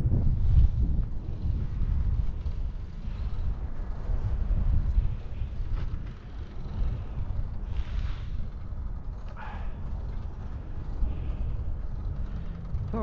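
Wind buffeting the microphone of a camera on a moving bicycle: a steady, uneven low rumble.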